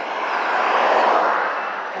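A road vehicle passing: a wash of engine and tyre noise that swells to a peak about a second in and then fades away.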